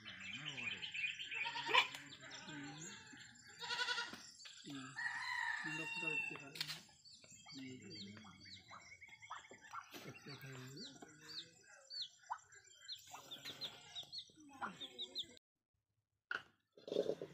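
Domestic fowl: clucking and crowing calls in the first few seconds, then a brood of chicks peeping in many short, high chirps. The chirps break off just before the end.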